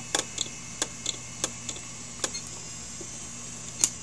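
A failing 7200 RPM IBM Deskstar hard drive heard electromagnetically through a telephone-listener pickup coil and amplifier: a steady electrical hum from the spindle motor under irregular sharp clicks as the voice coil moves the heads back to the stops and tries again. The drive cannot load its microcode from the platters and never comes ready.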